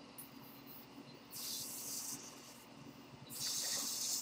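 Electric plasma arc lighter firing, a high hiss that comes twice for about a second each.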